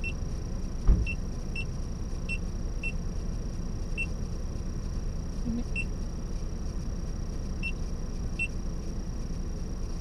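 A car idles with a steady low rumble. About a second in there is a single loud car-door thud. Short high beeps sound now and then at irregular intervals.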